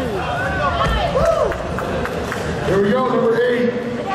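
A giant tractor tire lands on the floor with a single low thud about a second in, during a tire flip. Overlapping voices of onlookers carry on throughout.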